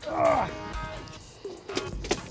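Background music, with a person's loud, drawn-out shout falling in pitch near the start.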